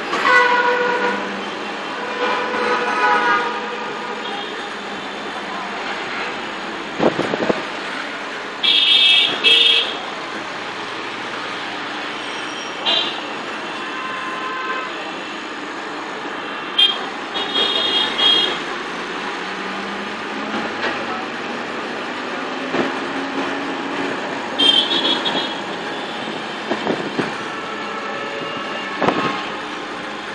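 Busy street traffic heard from a moving vehicle: steady engine and road noise with vehicle horns honking several times, the longest blasts about nine seconds in and again around seventeen to eighteen seconds, and a single knock at about seven seconds.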